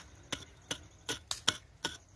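Small metal hand hoe chopping into dry, stony soil: about six sharp strikes in two seconds, unevenly spaced, as the blade bites and scrapes the earth and stones.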